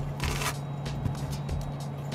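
A steady low hum of the space station cabin, with a short hiss about a quarter of a second in and a few faint clicks, heard through the replayed video.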